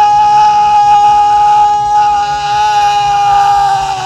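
A worship singer holding one long, loud high note in a gospel praise song, steady in pitch, dropping away right at the end.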